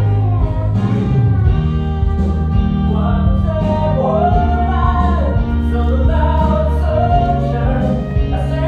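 A live musical-theatre song: a sung vocal line over band accompaniment, with sustained bass notes and chords.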